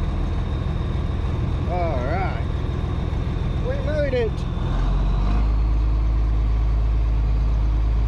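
Farm tractor's diesel engine running, heard from inside the cab as a pulsing low rumble. About halfway through, the note changes to a steadier, deeper hum. Two short voice-like sounds come through at about two and four seconds.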